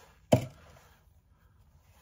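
A single sharp knock about a third of a second in, as the dry clay mug and tools are handled at the banding wheel, followed by faint rustling handling noise.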